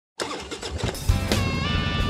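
A motorcycle engine starting and running with a low rumble, heavier about a second in, under intro music with held tones.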